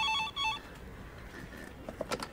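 Desk telephone's electronic ring: a rapid trill of short beeps in several tones, lasting about half a second at the start.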